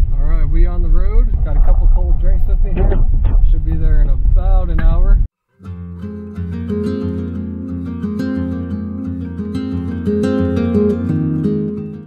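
A voice over a heavy low road rumble inside a moving pickup truck's cab. About five seconds in, the sound cuts off suddenly and is followed by steady background music led by plucked guitar.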